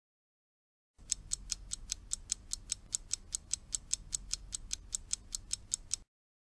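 Ticking timer sound effect marking the pause for repetition: even, fast ticks about five a second, starting about a second in and stopping suddenly.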